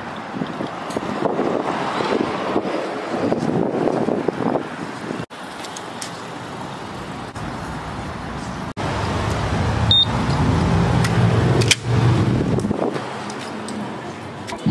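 Outdoor road-traffic noise, with a vehicle engine's low hum running close by for a few seconds in the second half. The sound breaks off abruptly twice.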